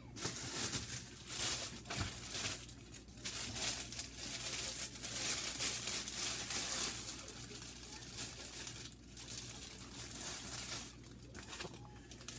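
Plastic bread bag crinkling in irregular bursts as it is handled and slices of bread are pulled out, with short pauses between bursts.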